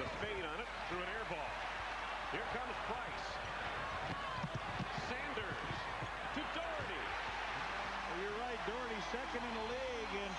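Basketball game in an arena: a steady crowd din with many short, high squeaks of sneakers on the hardwood court. The squeaks come quickly one after another near the end.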